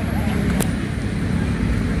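Steady low rumble of outdoor background noise, with faint distant voices.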